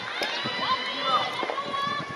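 Several voices of spectators calling out and chattering around the court, overlapping one another.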